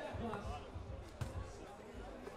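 Basketball bouncing on the court: a run of low thuds in quick succession, with one sharper smack a little over a second in.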